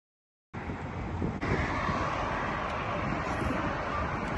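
After about half a second of dead silence, steady road-traffic noise with no distinct events.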